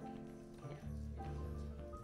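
School jazz band playing, with saxophones, brass and rhythm section sounding held chords over a bass line that change every half second or so.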